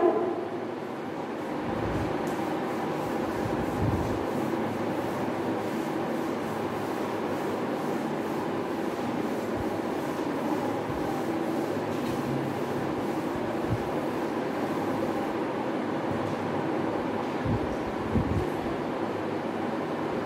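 Felt duster rubbing across a chalkboard, a steady scrubbing swish, with a few soft knocks near the end.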